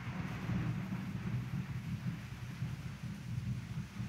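Steady low rumble of background room tone inside a large church, with no voice or music.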